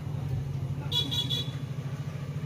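Three quick, high-pitched horn toots about a second in, over a steady low hum.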